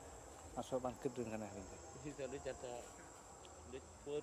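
A steady, high-pitched insect drone runs throughout, with a person's voice talking indistinctly over it in two short stretches, about half a second in and again a little after two seconds.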